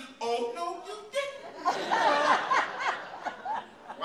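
A man's voice speaking briefly, then a room of people laughing from about a second and a half in, dying away near the end.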